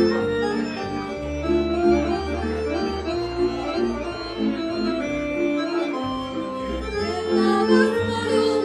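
Live Polish highlander (góral) folk band playing dance music: violins holding sustained chords over a bowed bass line that changes note about every second.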